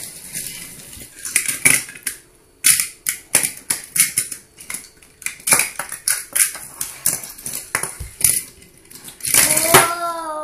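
Small plastic toys clicking, knocking and scraping on a hard tiled floor in irregular bursts, with a denser clatter near the end.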